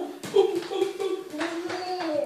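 A small ball knocking several times as it bounces on a tiled floor, under a young child's long, drawn-out vocal sound.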